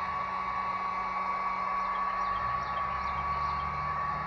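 Electric heat gun running steadily on a low setting with a constant high whine from its fan, blowing hot air to soften the adhesive behind a car emblem.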